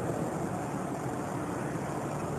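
Steady background noise: a low, even hum with no distinct sounds standing out of it.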